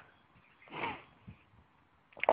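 Near silence broken, just under a second in, by one short faint breath from the person holding the camera.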